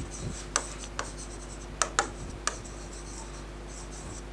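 A pen writing on the glass of an interactive touchscreen board: soft scraping strokes with a handful of sharp taps where the pen lands on the surface. A low steady hum sits underneath.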